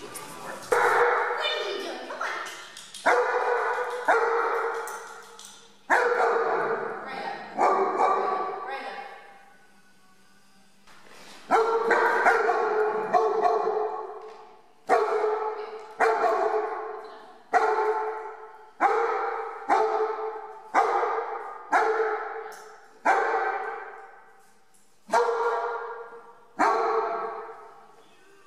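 A dog barking over and over, loud, sharp barks coming roughly once a second, each trailing off in an echo off hard walls, with a pause of a second or two about ten seconds in.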